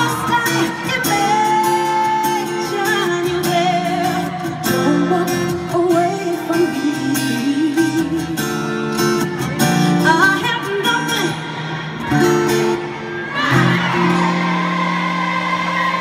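A woman singing live pop vocals with band accompaniment, in long held notes that waver in pitch.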